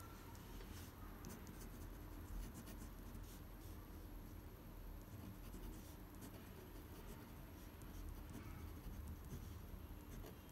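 Pen tip scratching across paper in faint, irregular strokes as cursive words are handwritten.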